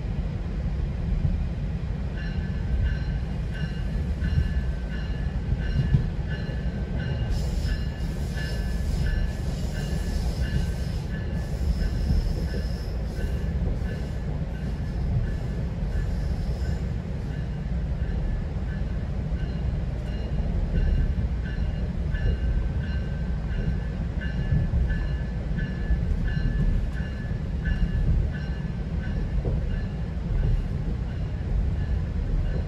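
A GO Transit passenger coach running at speed, heard from inside: a steady low rumble of wheels on track, with a high ringing tone pulsing a few times a second. From about 7 to 17 seconds a higher hissing squeal joins in, then fades.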